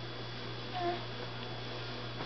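A baby makes one short, pitched vocal sound about a second in, over a steady low hum.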